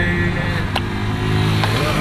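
Car cabin engine and road noise in a break between sung phrases, with a couple of sharp handclaps, the first about a second in.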